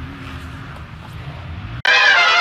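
A steady low rumble with a faint engine hum from motocross bikes running at a distance. Just before the end a loud brass music sting cuts in.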